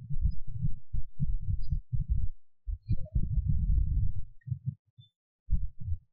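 Muffled low thumps in quick runs of several a second, with a pause about halfway through: keyboard typing carried to the microphone as dull knocks.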